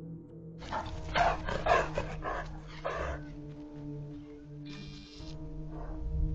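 Livestock guardian dog barking in a run of about five loud barks over two or three seconds, an alarm bark at coyotes near the herd.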